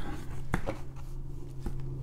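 A paper greeting card being handled: two soft clicks, about half a second in and near the end, over a low steady hum.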